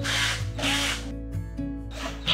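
Background music with a steady beat, over a cordless drill running briefly as it drives screws into flat-pack furniture panels.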